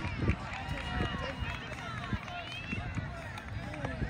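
Background chatter of children's voices outdoors, with scattered high-pitched calls over a steady low rumble.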